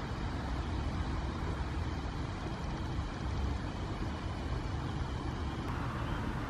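Steady low outdoor background rumble with a light hiss, no single event standing out.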